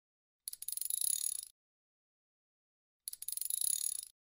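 Two short editor-added sound effects, each about a second long: a bright, high ringing rattle made of rapid ticks. The first comes about half a second in, the second about three seconds in.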